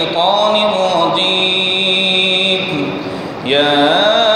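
A man chanting Quranic recitation (tilawat) in Arabic in the melodic tajweed style, holding long notes that glide up at the start of each phrase. There is a short break about three seconds in before the next phrase rises.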